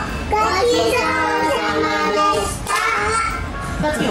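A young child singing a tune in held, steady notes.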